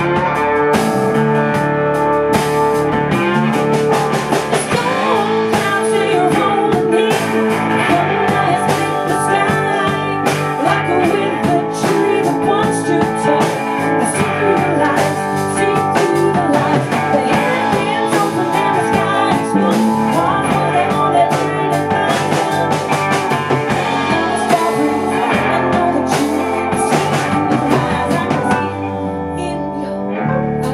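Live blues band playing, with electric guitar, bass guitar and drum kit and a woman singing. The band eases off a little near the end.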